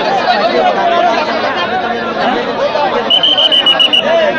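Crowd of spectators chattering, many voices overlapping, with a high steady tone sounding for about a second near the end.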